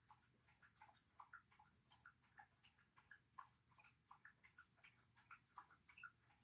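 Very faint, irregular clicking, a few small ticks a second: a dog gnawing on a nylon chew bone.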